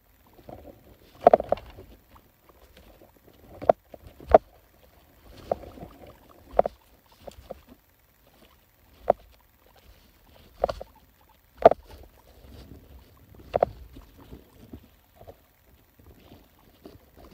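Guinea pigs moving about in the cage close to the camera: irregular knocks and bumps, about a dozen, with light rustling of the paper bedding between them.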